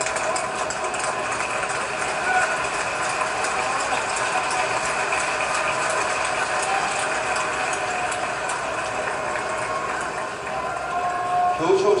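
Crowd chatter with many camera shutters clicking rapidly and continuously.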